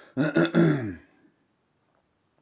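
A man's wordless vocal sound, about a second long, in two parts with a falling pitch, then quiet.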